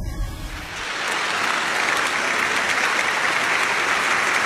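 Large theatre audience applauding, the clapping swelling up over the first second and then holding steady.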